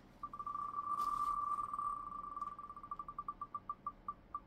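Online spinning-wheel picker's ticking sound effect from a laptop's speaker: rapid pinging ticks that run together at first, then slow steadily as the wheel winds down.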